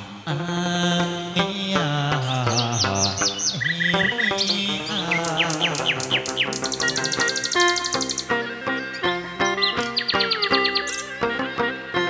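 Songbird singing: series of high whistled notes sliding downward, with fast trills about halfway through and again near the end, over instrumental music with held and changing notes.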